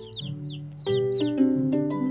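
A newly hatched chick cheeping: a quick run of short, high, falling peeps in the first second and a half, over soft background music with held notes.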